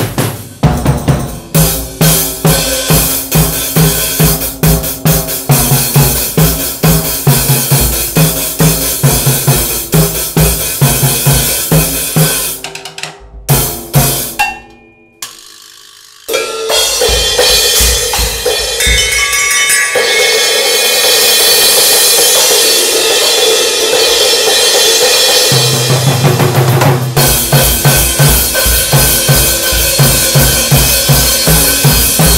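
Acoustic drum kit played with sticks in a rock beat: bass drum, snare, hi-hat and cymbals. About 13 seconds in the playing drops away almost to silence for a couple of seconds, then comes back as a long, dense, even-level stretch heavy with cymbals before the steady beat returns near the end.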